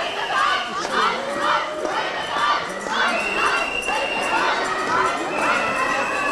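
Dense crowd of women protesters shouting and cheering, many high voices overlapping. A high steady note sounds twice in the second half, about a second each time.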